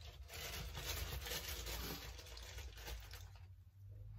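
Crinkling and rustling of a dog-treat bag being handled as a treat is fetched, lasting about three seconds before it dies down.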